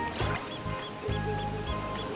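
Background music: held bass notes under a light, quick high-pitched figure that repeats every fraction of a second.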